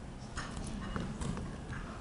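A few light knocks and taps, spaced irregularly, from a folder and papers being handled and set down on a wooden lectern, over a steady low room hum.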